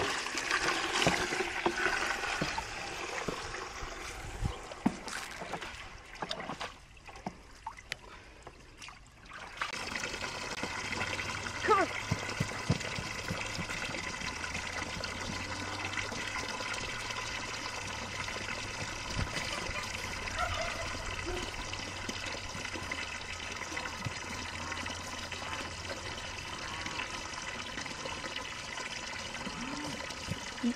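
Water from a garden hose running and trickling into plastic pans as they fill. The sound dips for a few seconds partway through and then runs on steadily.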